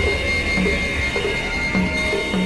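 Experimental electronic synthesizer music: a steady high tone held over a low drone, with short low notes recurring irregularly.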